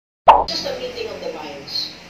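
A short, sudden sound-effect hit about a quarter second in, dropping quickly in pitch, marking a title-card transition. It is followed by faint voices over room noise.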